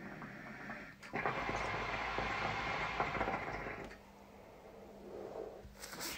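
Hookah water bubbling steadily in the glass base as a long draw is pulled through the hose, starting about a second in and stopping after about three seconds. A faint breath out follows near the end.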